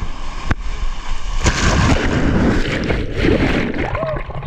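Ocean surf breaking and whitewater rushing and splashing right at the microphone of a camera held at water level. It grows louder about a second and a half in as a wave washes over.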